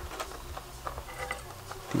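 Scattered light clicks and taps as a small 40 mm fan and its clear plastic packaging tray are handled.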